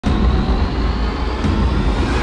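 Low steady rumble of a car engine idling.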